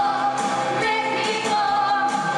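A young girl singing live into a handheld microphone over pop accompaniment, holding one long note.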